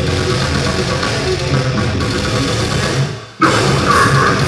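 A metal band playing live, with distorted electric guitars and drums. A little after three seconds in, the music dies away into a brief gap, then the full band comes back in hard just before the end.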